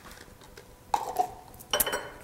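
A metal whisk clinking against a small glass bowl and the stock pot as beaten egg whites are scraped into the soup. There is one short ringing clink about a second in and a sharper cluster of clinks near the end.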